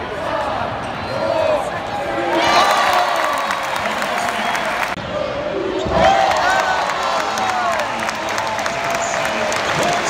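Basketball arena crowd noise during play, with the ball bouncing on the hardwood court and sneakers giving short squeaks. The sound shifts abruptly about two and a half and six seconds in, where clips are joined.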